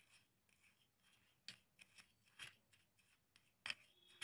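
Faint, scattered scrapes of a small spoon stirring dry sugar, salt and spice powders together in a bowl: a handful of light strokes, the clearest near the end.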